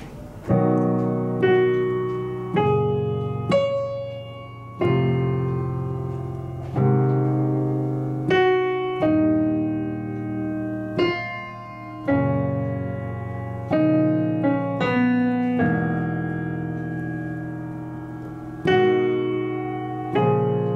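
Piano playing a slow, unusual melody in the right hand over sustained block chords in the left. The melody is harmonized with basic chords (B, G♭, F, A♭, E♭, B♭m, later suspended chords), with a new chord or note struck every one to two seconds and ringing and fading until the next.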